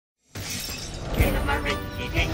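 Intro music starts suddenly about a third of a second in, layered with a crashing sound effect, loudest just after a second in.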